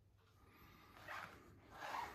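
Faint breathing close to the microphone: two soft breaths, about a second in and near the end, over quiet room tone.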